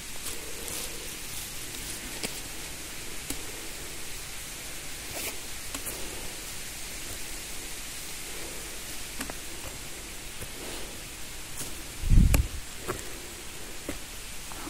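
Footsteps and rustling through dry leaves, twigs and pine needles on a forest floor, over a steady hiss, with scattered faint crackles and one loud low thump about twelve seconds in.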